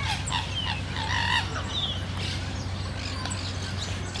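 Birds calling in a peafowl enclosure: small birds chirp again and again in short falling notes, and a brief honk-like call sounds about a second in.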